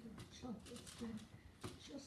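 Faint rustling and light clicks of aluminium foil as rolled cookie-dough balls are handled and set down on a foil-lined sheet pan, with quiet murmured voices.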